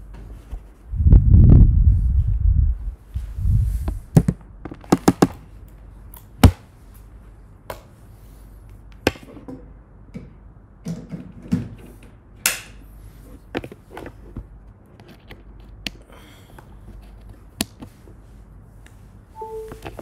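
Handling noises while a laptop charger is being plugged in: a loud, low rumbling thump about a second in, then a scatter of sharp clicks and knocks, the sharpest a little past the middle of the first half, fading to occasional faint taps.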